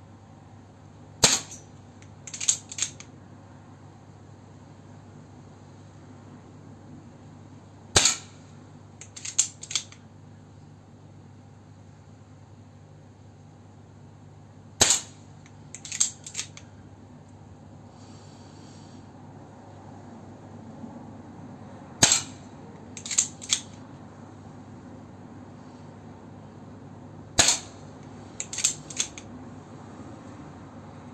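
Five shots from an Artemis multi-shot air pistol with a moderator on its barrel, each a sharp crack, spaced several seconds apart. A second or so after each shot come two or three quick mechanical clicks as the action is cycled to feed the next pellet from the magazine.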